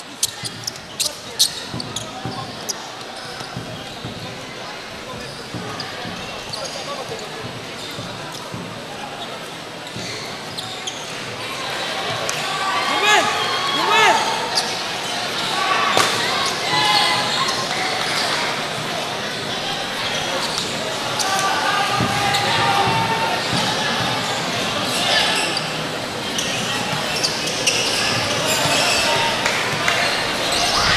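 Crowd in a large gymnasium chattering and shouting, louder from about twelve seconds in, with the sharp knocks of a basketball bouncing on the court.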